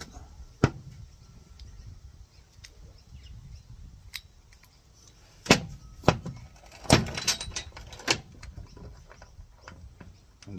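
Small metal engine parts being handled: a few sharp clicks and knocks as the clutch parts and the aluminium engine block are moved and set down, most of them in the second half.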